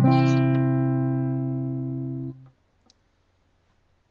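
Guitar's final chord of a country song, struck once and left to ring, dying away slowly, then damped about two and a half seconds in; near silence follows.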